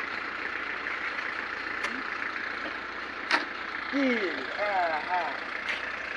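Steady road-traffic noise from cars on the street beside a construction site, broken by a few sharp clicks, the loudest about halfway through. A person's short call comes near the end.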